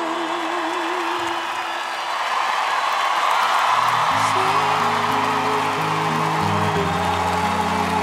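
A girl's sustained sung note with vibrato ends just after the start, under cheering from the audience, and from about four seconds in piano chords are held and changed as the song goes on.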